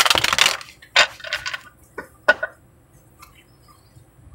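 A tarot deck being shuffled by hand: a brief papery rattle of cards at the start, the loudest part, then a few short card slaps and rustles over the next two and a half seconds.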